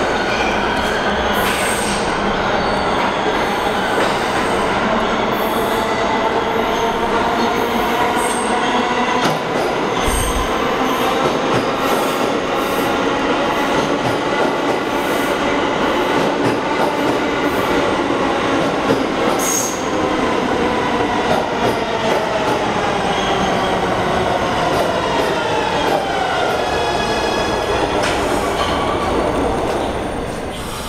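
Kawasaki R211A subway train pulling into a station and braking: loud steady wheel and rail noise with the motors' layered whine gliding downward as it slows. The noise drops off at the end as the train comes to a stop.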